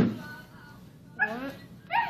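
A young girl imitating a puppy with her voice: a short whining yip about a second in and another brief yip near the end. A thump on the wooden floor comes at the start.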